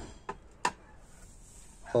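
Two short clicks, a faint one and then a sharper one, about a third and two thirds of a second in, then low room tone.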